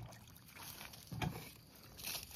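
Faint splashing and lapping of shallow lake water at the shore, with a louder splash a little past a second in.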